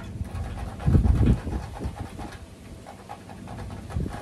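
Cloth rubbing and wiping over the plastic front of an old TV/VCR combo, with a brief low rumble about a second in.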